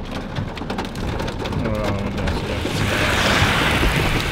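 Hail pattering on a car's roof and glass, heard from inside the car as a dense run of quick ticks. Near the end the hiss of the storm swells as the side window comes down.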